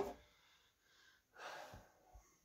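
Mostly quiet, opening with one short knock, then a soft breath out through the nose about one and a half seconds in.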